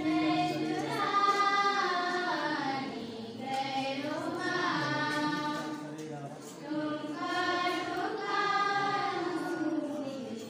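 A group of voices singing a hymn together during a church service, in long held notes phrased in lines of about three seconds with short breaks between.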